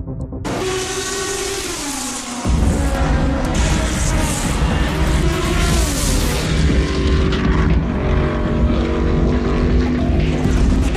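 Race car engine running at speed, its pitch falling and then rising and dipping again, mixed with a music soundtrack that gains a heavy low end about two and a half seconds in.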